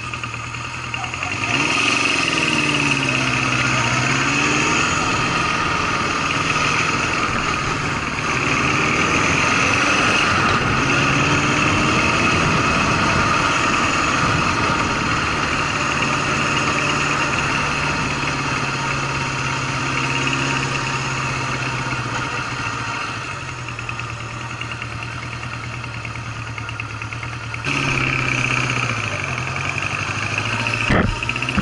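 Honda CB750's inline-four engine running as the motorcycle is ridden, getting louder about a second and a half in as it pulls away, its pitch rising and falling with the throttle.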